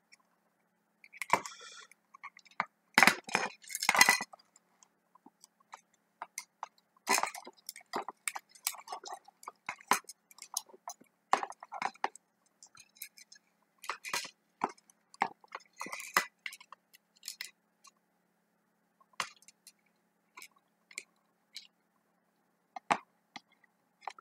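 Irregular small clicks, clinks and knocks of an analogue voltmeter's case and small parts being handled and fitted back together, loudest a few seconds in.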